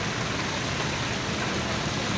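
Steady rushing hiss of fire-hose water jets spraying onto a smouldering truckload of straw.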